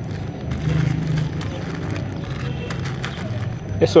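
Thin plastic bags of potting soil crinkling and rustling as hands squeeze and press the soil down to compact it, over a steady low background hum.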